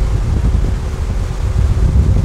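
Wind buffeting the microphone on a moving tow boat, over a steady engine hum and rushing water.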